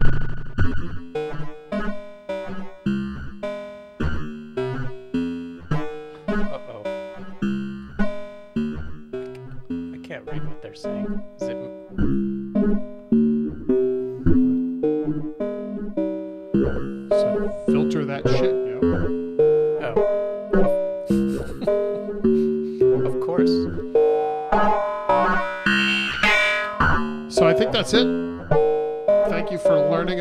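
Eurorack modular synthesizer patched through Pittsburgh Modular's Flamingo harmonic interpolation (center-clipping) module, playing a steady run of short plucked notes at changing pitches with a metallic edge. Partway through, the tone grows brighter as a filter's frequency knob is turned up.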